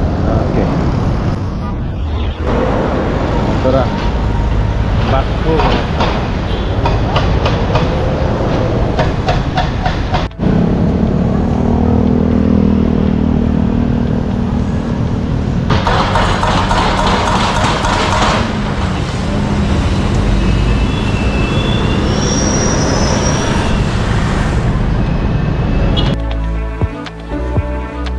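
City street traffic beside a road construction site. Vehicle engines run and pass, with a run of sharp knocks in the first half. After an abrupt change about ten seconds in, a steady engine drone takes over.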